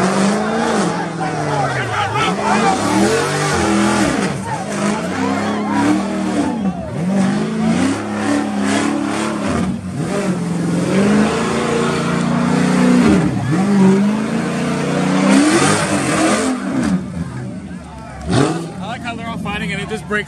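A Dodge Charger doing a burnout with its tyres spinning on pavement. The engine revs up and down over and over, over the hiss of the tyres.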